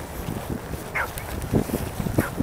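A dog gives a short, high whine that falls in pitch about a second in, over uneven thuds of footsteps moving quickly through grass.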